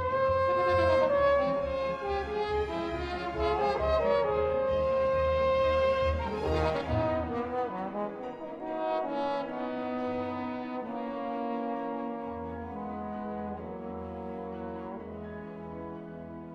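Trombone playing a slow melody of long held notes with a symphony orchestra, in a concerto for two trombones and orchestra. The music is loud at first and grows gradually softer over the second half.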